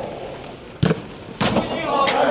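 Two sharp thuds of a football being kicked, a little over half a second apart.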